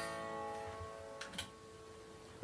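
Yamaha Pacifica electric guitar chord ringing out and slowly fading, with a few faint clicks partway through.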